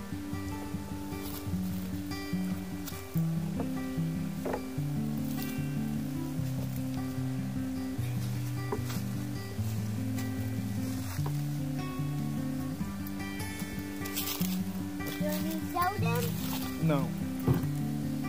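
Background music: a melody of stepped, held low notes over a steady bed, starting at the very beginning.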